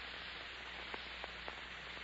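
Steady hiss and low hum of an old 1946 radio broadcast recording, with three faint clicks about a second in.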